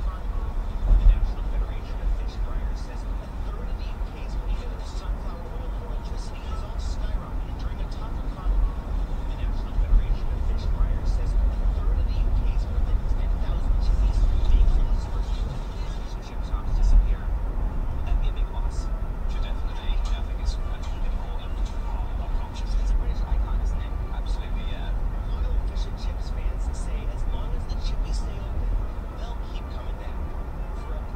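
Steady low rumble of a car's engine and tyres heard from inside the cabin while driving at road speed, with a couple of louder bumps, one about a second in and another about halfway through.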